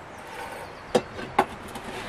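Two light metallic clinks about half a second apart, about a second in, as a slotted brass stove stand is set down over a lit brass burner.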